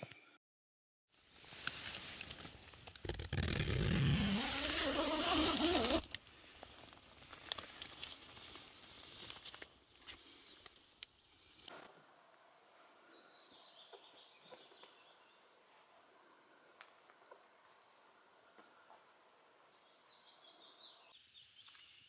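A few seconds of loud rushing noise with a deep rumble, like wind on the microphone, dying down after about six seconds. Then faint, quiet ambience by a still loch, with a few faint high bird calls.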